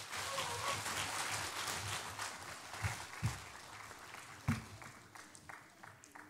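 Church congregation applauding, strongest over the first couple of seconds and then dying away, with a couple of short low thumps later on.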